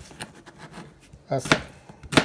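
Chef's knife slicing a cucumber into half-moons, the blade knocking on the cutting board a few times, most sharply about a second and a half in.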